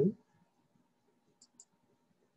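Two faint, sharp clicks about a fifth of a second apart, a little past the middle, from a computer mouse, following the end of a spoken word.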